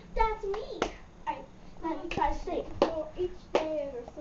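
A young girl's voice in short wordless, sing-song vocal sounds, with a few sharp hand claps about a second in and again near the end.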